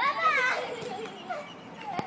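A young child's excited high-pitched shriek in the first half-second of ball play, followed by a few shorter, quieter cries.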